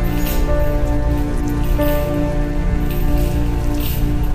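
Slow instrumental background music of long held notes that shift a few times, over a steady crackling noise underneath.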